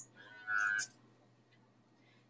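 Automatic sensor soap dispenser's small pump motor giving one brief whir of under half a second, about half a second in, as it is triggered to dispense.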